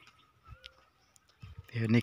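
A short pause with only a few faint clicks, then a person's voice starting to speak near the end.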